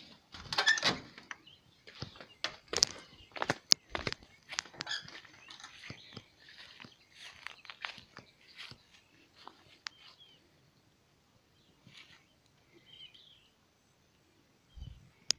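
Knocks and footsteps of someone stepping out through a screen door and walking on sandy ground. They are loudest and densest in the first few seconds and thin out after about ten seconds, with faint bird chirps.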